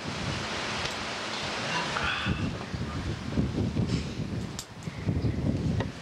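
Wind buffeting a camcorder microphone: an uneven, gusting low rumble, with a few faint clicks.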